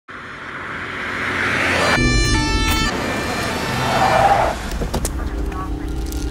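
A car passing at night: a rush of engine and tyre noise that swells over the first two seconds and comes again about four seconds in. Between them a brief ringing chord of several steady tones sounds for about a second.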